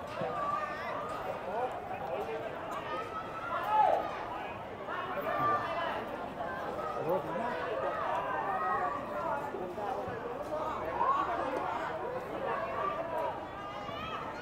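Indistinct chatter of many people talking at once, with a louder nearby voice briefly standing out about four seconds in.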